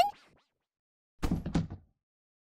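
A dull thud sound effect of a body collapsing to the floor, about a second in: two quick heavy knocks close together.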